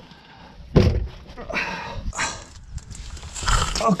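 A knock about a second in, then rustling and scraping as a blue single-use tourniquet is pulled from its roll and wrapped around an arm.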